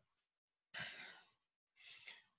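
Near silence broken by one soft sigh lasting about half a second, about a second in, and a fainter breath near the end.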